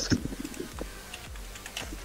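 Light, irregular clicking of typing on a computer keyboard.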